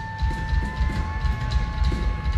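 Live rock band playing loudly: one long held high note that rises slightly in pitch, over fast, steady bass-drum beats.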